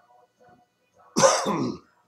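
A man coughs once, briefly, about a second in.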